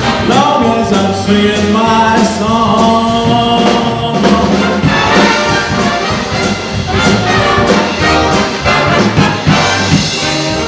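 Live big band playing swing jazz: the brass section of trumpets and trombones leads over the drum kit's cymbals and snare.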